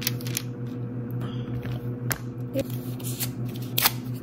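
Thin tattoo stencil paper rustling and crinkling between the fingers, a run of small sharp crackles with a louder one near the end.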